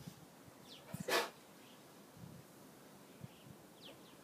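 Bernese Mountain Dog giving one short, sharp breathy huff about a second in, just after a couple of faint clicks.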